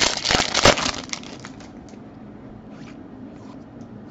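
Foil wrapper of a 2019 Bowman's Best baseball card pack being torn open and crinkled, loudest in about the first second, then fainter rustling as the cards are handled.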